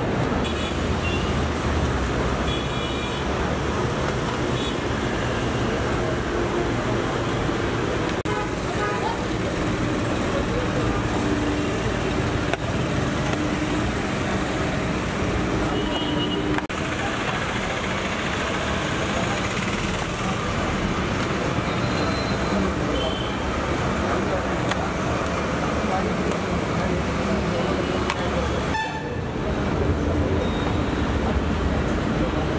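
Road traffic noise running steadily, with short car horn toots a few times, and people's voices in the background.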